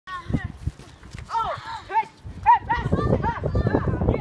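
Children yelling and squealing in short, high-pitched shouts as they play, with a low rumbling underneath from about two and a half seconds in.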